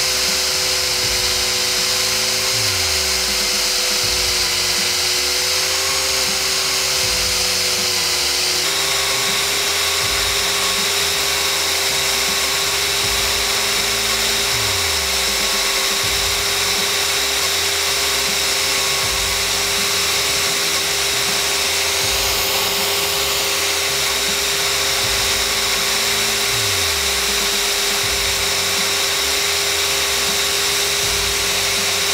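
Cordless Metabo drill running steadily at speed, driving a Tri Tool 603SBCM clamshell split-frame lathe whose tool bits are feeding in to sever a pipe. A steady whine, which steps slightly higher about nine seconds in.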